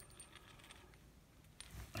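Near silence: room tone with a few faint clicks of small metal parts being handled.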